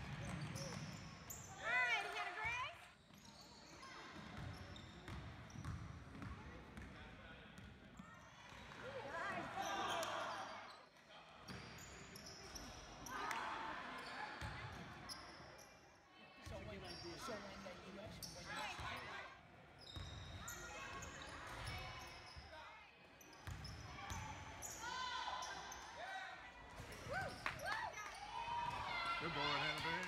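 Live basketball game sound in a gym: a basketball bouncing on the hardwood floor amid spectators' voices and shouts, in bouts that change abruptly from clip to clip.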